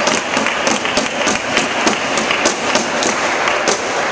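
Sharp, irregular smacks and taps of a badminton rally echoing in a large hall: rackets striking the shuttlecock and players' feet landing on the court, several a second over a steady background hum of the hall.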